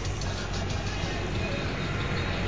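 Steady engine and road noise of a vehicle travelling along a dirt road, with a low, even hum.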